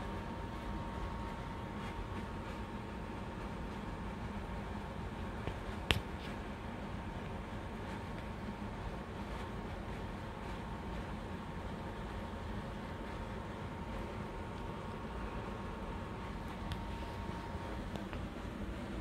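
Steady low background noise, like a room fan or air conditioning, with a faint steady high tone under it, and a single sharp click about six seconds in.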